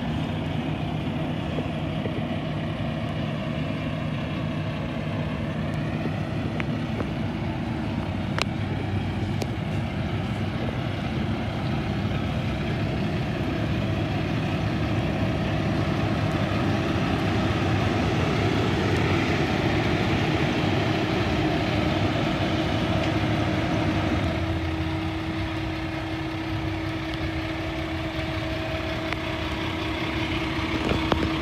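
Peterbilt 579 semi tractor's diesel engine idling steadily, a little louder near the middle as the front of the truck is neared.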